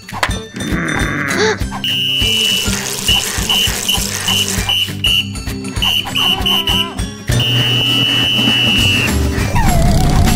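A coach's whistle blown in a cartoon, at one steady high pitch: a long blast, then a string of short quick toots, then another long blast near the end, over backing music.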